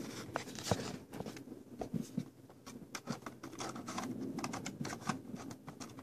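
Scattered light clicks and taps from fingers handling a plastic Lionel O scale M7 model train car, pushing the small tab that slides its doors open.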